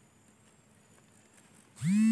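Faint outdoor background, then about 1.8 s in a loud, steady, low buzz starts abruptly: a phone's vibration motor going off with an incoming call.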